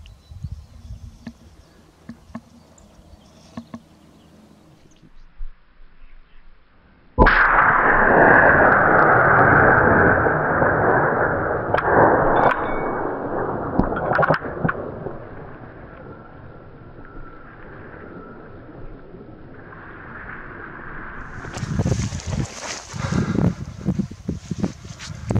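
A single rifle shot about seven seconds in, sudden and loud, followed by several seconds of rolling echo that slowly fades.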